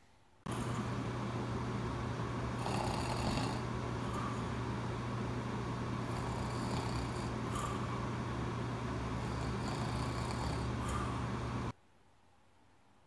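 A steady low hum with room noise, and faint soft sounds about every three seconds.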